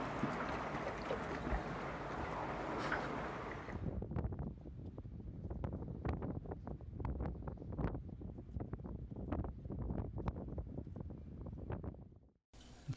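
Wind buffeting the microphone on an open boat deck, a steady rushing noise that stops abruptly about four seconds in. After that comes a quieter low rumble with scattered, irregular short clicks and taps.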